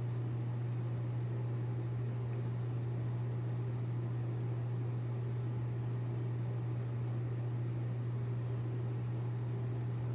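Steady low hum with an even hiss of moving air from a running fan unit, unchanging throughout.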